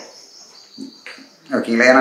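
Faint, steady high-pitched trilling of insects, heard in a pause in the talk. A man's voice comes back in about one and a half seconds in and is the loudest sound.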